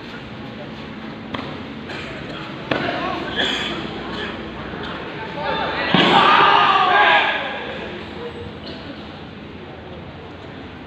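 Karate kumite bout in an echoing sports hall: a few sharp thuds, then a sudden loud burst of shouting about six seconds in, as the fighters clash, that dies away after about a second.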